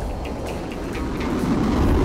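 Sound effect of a rocket shooting up an electromagnetic launch tube: a rumbling whoosh that swells in loudness and is loudest near the end.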